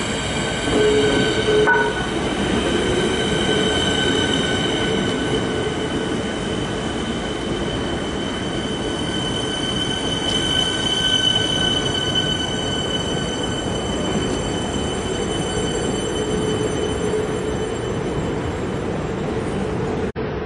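Siemens Nexas electric multiple unit pulling into a platform and slowing to a stop. Its wheels run on the rails under a steady whine of several held high tones from the traction and braking gear; the higher tones fade in the last few seconds as it stops.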